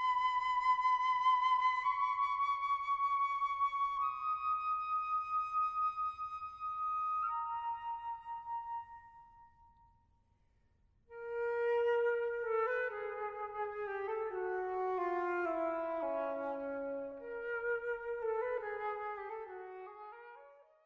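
Flute music: long held notes, stepping up a little, that fade away about nine seconds in; after a moment of silence a new phrase enters, its notes stepping downward, and it fades out at the end.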